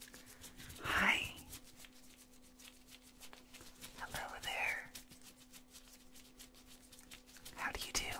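Close, ear-to-ear whispering: three short whispered words a few seconds apart, one in the first second, one about four seconds in and one near the end. Between them comes a faint, fine crackle of latex-gloved fingers wiggling against the microphone at the other ear, meant as a distraction in a whisper hearing test.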